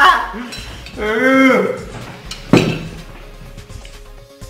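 A metal spoon clinks once, sharply, against a ceramic bowl about two and a half seconds in as a man eats from it. Before it comes a man's brief drawn-out vocal sound.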